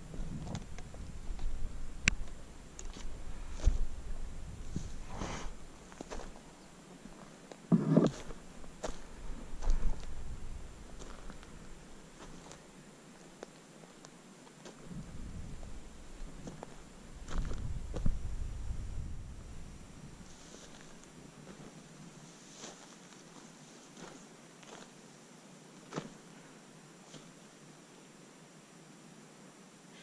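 Footsteps crunching over loose rocks and gravelly soil, irregular, with gusts of wind rumbling on the microphone now and then and one brief vocal sound about eight seconds in.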